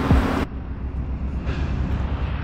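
Low, uneven rumble of wind buffeting an outdoor camera microphone, with no engine note. The sound changes abruptly at a cut about half a second in.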